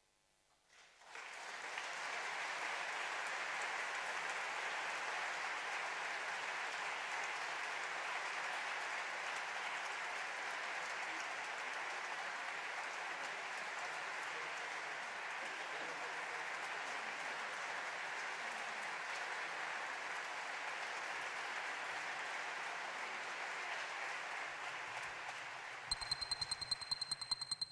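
Audience applauding, starting about a second in and holding steady, easing off slightly near the end.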